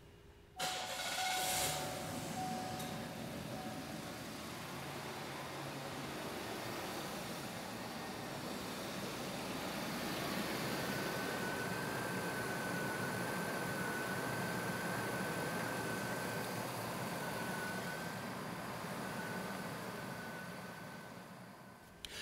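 GM 3800 V6 engine starting about half a second in and then idling steadily, a thin steady whine joining about halfway and the sound fading out near the end. The engine is running to draw freshly filled coolant down from the funnel into the cooling system.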